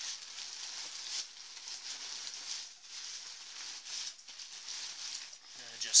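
Plastic trash compactor bag liner inside a backpack crinkling and rustling unevenly as a sleeping quilt is stuffed down into it.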